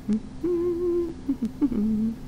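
A woman humming a few short notes to herself with her mouth closed, holding one steady note in the middle and dropping to a lower note near the end. A steady low electrical hum runs underneath.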